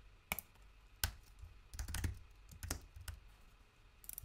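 Computer keyboard typing: a handful of separate keystrokes at uneven intervals, with short pauses between them.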